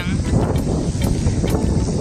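Wind blowing across the phone's microphone: a loud, steady low rumble.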